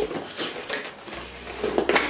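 Cosmetic packaging being handled, a cardboard box and a plastic blister pack: rustling with a few light clicks.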